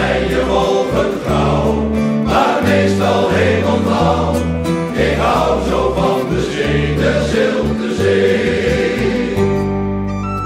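Dutch sailors' choir singing a song about the sea, with instrumental backing and a steady bass line. The singing stops shortly before the end, leaving the accompaniment.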